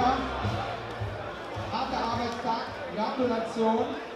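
Men talking in a large, echoing hall, over a thumping bass beat of background music that fades out within the first two seconds.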